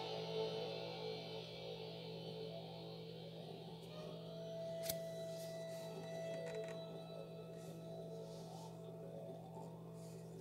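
The closing seconds of a recorded pop song playing back quietly and thinning out, with a single held note from about four seconds in that dies away near the end. A sharp click about five seconds in.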